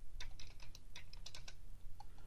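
Computer keyboard being typed on: a quick run of key clicks lasting about a second and a half as digits are entered into a field.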